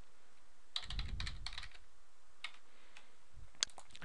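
Computer keyboard typing: a quick run of keystrokes about a second in, a single keystroke near the middle, and a short burst near the end.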